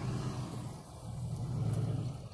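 Car engine idling, heard from inside the cabin as a steady low hum.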